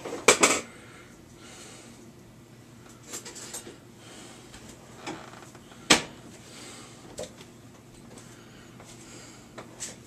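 A few sharp clicks and knocks close by, the loudest about half a second in and another near six seconds, over a faint steady hum.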